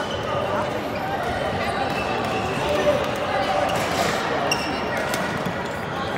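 Badminton rally: several sharp racket strikes on the shuttlecock and thuds of footfalls on the wooden court, the loudest strike about three seconds in, over a steady chatter of many voices in the hall.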